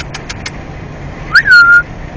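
A dog's single short, high whine about one and a half seconds in, rising, then dipping and held for a moment, over the low steady hum of a car on the road.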